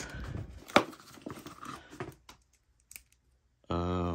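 A hand rummaging through a soft-sided fabric tool tote: rustling of fabric and tools shifting against each other, with one sharp click just under a second in, then a few faint ticks. Near the end a person gives a short hummed "uhh".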